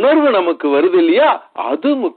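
Speech only: a man preaching in Tamil.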